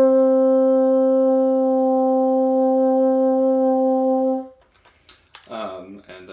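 Bassoon, fitted with an unmarked #2 standard-bend bocal, holding one long steady note at the top of a rising scale, cut off about four and a half seconds in. A man's voice follows near the end.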